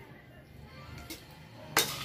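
A metal spoon stirring vegetables in a metal wok as the sauce thickens. There is a faint clink about a second in and one loud clank of spoon on wok near the end.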